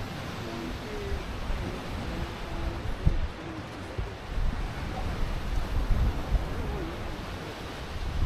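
Gulf surf washing steadily on the shore, with wind rumbling on the microphone and a few low thumps from the gusts about three to six seconds in.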